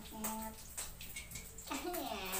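Fish frying in hot oil in a wok over a wood fire: a steady sizzle with scattered pops of spattering oil.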